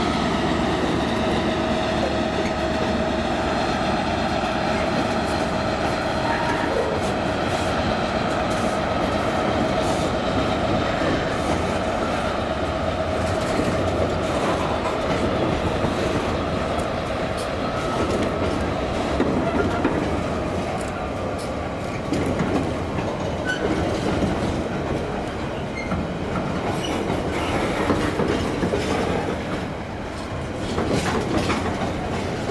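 A container freight train behind a Class 66 diesel locomotive rolls past at a steady speed: a continuous rumble of wagon wheels on the rails with repeated clacks over rail joints. A steady whine is heard through the first half and fades out, and the clacks come thicker towards the end.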